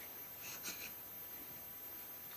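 Quiet room tone with a steady faint hiss, and a faint short noise about half a second in.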